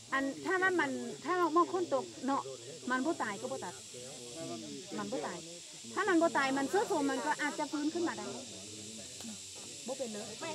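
Speech: a woman talking, over a faint steady hiss.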